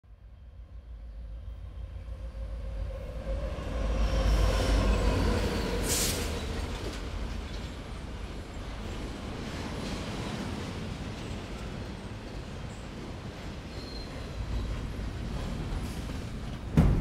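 Passenger train rolling past at close range: a steady rumbling, rolling noise that swells up over the first few seconds, is loudest about four to six seconds in with a short high hiss, then carries on steadily.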